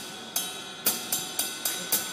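Single drumstick strokes on a cymbal, played one-handed in the up-stroke/down-stroke (push-pull) technique, each leaving a ringing tone. The strokes come about two a second, then quicken to about four a second about a second in.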